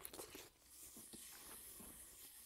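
Faint chewing of a bite of cheese-filled grilled sausage, with a few soft mouth clicks in the first half second and scattered faint ticks after.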